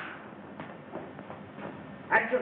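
Steady hiss of an old film soundtrack, with a few faint clicks. A loud thud fades away in the first moment.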